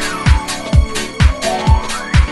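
House music with a steady four-on-the-floor kick drum, about two beats a second, and hi-hats and synth lines over it.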